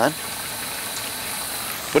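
Garden hose spraying a steady stream of water, a continuous hiss.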